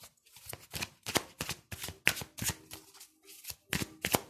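A deck of large tarot cards being shuffled by hand: a quick, irregular run of short papery strokes as the cards slide and strike against each other, a few each second.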